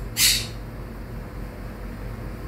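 A quaker parrot (monk parakeet) gives one short squawk near the start.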